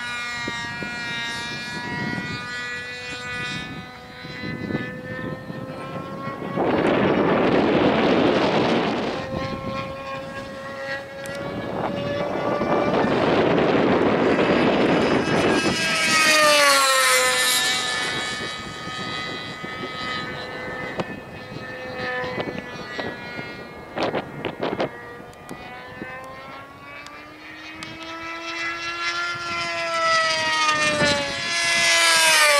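Radio-controlled model airplanes flying overhead: the propeller motors give a steady whine that rises and falls in pitch with throttle. There are louder stretches as a plane comes close, and the pitch drops sharply as one passes by about halfway through.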